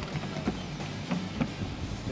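Background music with a drum-kit beat.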